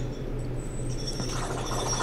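Faint, high-pitched squeaky whine from a drill being run outside: a few thin steady tones that drop in pitch about a second in. It rides over a steady low hum. The sound is likened to an insane squeaky hamster wheel.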